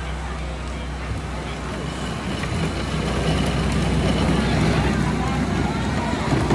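Outdoor street ambience: a steady low motor hum under distant crowd chatter, growing louder about halfway through.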